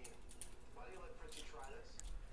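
Faint light taps and clicks of a stylus writing on a tablet, a few scattered through the two seconds.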